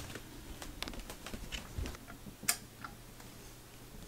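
Faint, scattered ticks and taps of someone moving about and handling small things, with one sharper click about two and a half seconds in.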